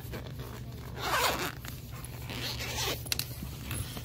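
A zipper being pulled in short rasping strokes, the loudest about a second in and a weaker one a little later, followed by a couple of small sharp clicks near the end.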